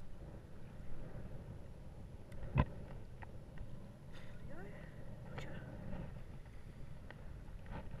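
Steady low rumble of wind on the microphone, with one sharp knock about two and a half seconds in and a man briefly saying "there we go, gotcha."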